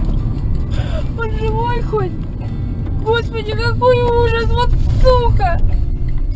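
Steady low road and engine rumble heard inside a moving car, with a high-pitched voice speaking in short bursts over it from about a second in.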